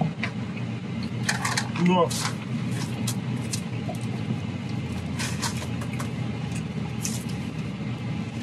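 Short, sharp crunching and rustling sounds, scattered irregularly, from someone eating waffle fries and handling the takeout packaging, over a steady low hum in the car cabin.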